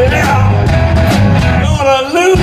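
Live rock band playing loudly, with electric guitars, bass and drums. The bass and drums cut out for a moment near the end.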